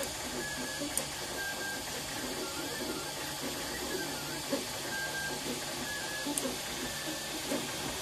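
MakerBot 3D printer running a print: its stepper motors sing short pitched notes that change from move to move as the extruder head travels, making the printer's daft tunes, over a steady hiss and mechanical whirring, with a couple of sharp ticks.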